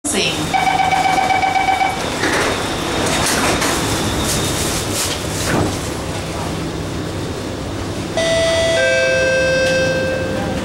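Door-closing warning tone inside an SMRT R151 metro car, steady for about a second and a half, followed by the doors sliding shut and the train's running rumble. Near the end a falling two-note chime sounds, which comes before the next-station announcement.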